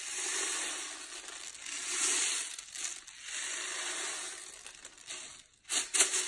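Homemade rain stick: rice pouring through a cardboard paper towel tube past a twist of aluminium foil, making a rain-like hiss that rises and falls in several swells as it runs. A sharp tap or two sounds near the end.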